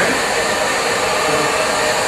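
Handheld hair dryer blowing steadily.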